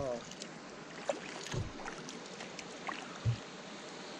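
Kayak being paddled on calm river water: quiet paddle strokes with a few light ticks and two dull bumps about a second and a half apart, over a faint steady hiss.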